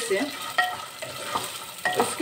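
A metal spatula scraping and stirring dried peas frying in oil and ghee in a pressure cooker, in short irregular strokes over a sizzle as the peas are roasted.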